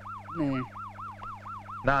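A rapid electronic warble, siren-like, rising and falling in pitch about four times a second over a steady low hum, as a comic sound cue in a film's background score. A voice briefly exclaims about half a second in, and again at the end.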